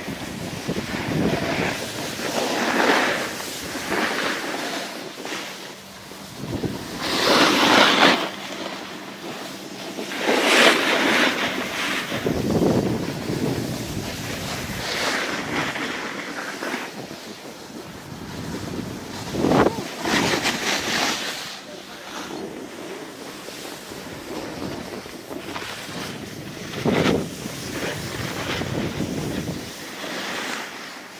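Wind rushing over the microphone of a camera moving down a ski slope, with edges scraping and swishing over packed snow. It swells into a louder whoosh every few seconds as turns are carved.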